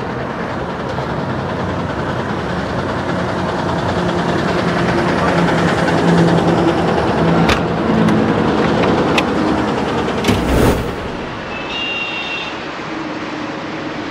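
Heavy truck engine running amid highway traffic noise, growing louder toward the middle. There is a short heavy thump about ten seconds in.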